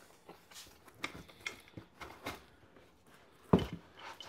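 Parts and packaging being handled in a cardboard box: light scattered rustles and taps, with a louder knock and rustle near the end as a part is lifted out.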